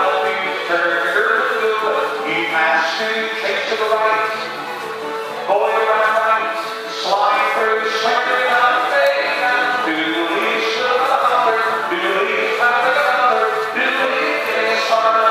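A square dance singing call: recorded instrumental music played over a hall sound system, with a male caller's voice over it.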